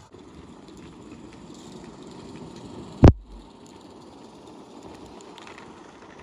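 Accucraft Sabrina 16 mm scale live steam locomotive running through snow, heard faintly as a steady low rush of noise. One sharp, loud click about halfway through.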